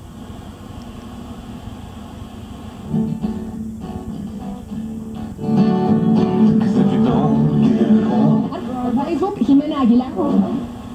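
1965 Chevrolet Delco AM-FM car radio (model 986101) receiving FM through its bench speaker as it is tuned across the dial. A low steady noise gives way to music about three seconds in, which comes in much louder around five and a half seconds as a station tunes in.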